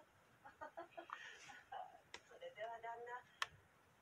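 Faint voices from a television playing a period drama, with two sharp clicks, the second the louder, near the end.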